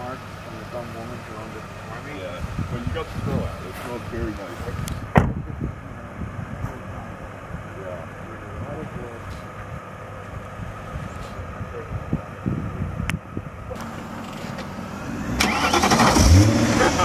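BMW E39 5 Series engine idling steadily, with a car door shutting about five seconds in and a lighter click later; near the end the engine noise swells as a car is moved.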